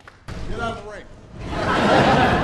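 Live ceremony sound cut in suddenly: a low outdoor rumble with a brief voice. In the last half second a loud rising rush swells in, the start of the news channel's theme music.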